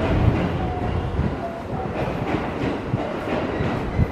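Aoimori Railway electric train rolling past along the platform: a steady low rumble of the cars with irregular wheel knocks on the rails.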